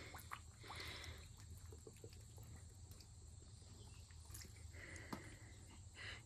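Very faint water lapping with a few small ticks as a potted Thanksgiving cactus is dunked and moved by hand in a galvanized stock tank of water; otherwise near silence.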